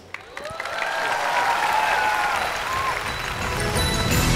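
Studio audience applauding, building up about half a second in, with music playing underneath.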